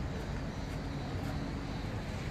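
A steady low mechanical hum over constant background noise, unchanging throughout.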